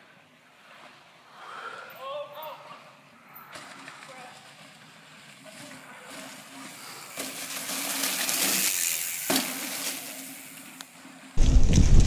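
Mountain bike tyres rolling over dry fallen leaves as a rider approaches, the rustling growing louder about seven to nine seconds in and fading near the end, with a single sharp click. Faint distant voices come early on.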